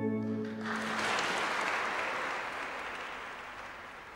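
An organ's last held chord dies away within the first second, then a church congregation applauds. The applause fades away steadily.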